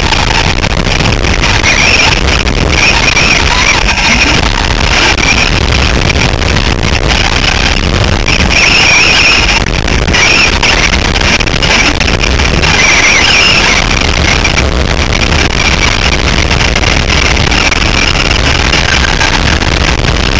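Onboard sound of a Traxxas Slash RC short-course truck racing: the electric motor and drivetrain whine swells and fades with the throttle through the corners, over a constant loud rumble of tyres, chassis and wind on the body-mounted microphone.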